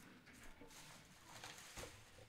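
Near silence, with a few faint rustles and taps of trading cards being handled on a tabletop.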